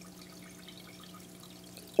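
Aquarium filter running: faint trickling and dripping water over a low steady hum.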